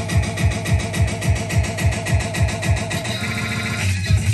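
Electronic dance music mixed live on a Pioneer DDJ-SX3 DJ controller: a steady kick-drum beat of about four a second under a warbling synth tone. About three seconds in the beat drops out for roughly a second, leaving a higher pattern, before it comes back.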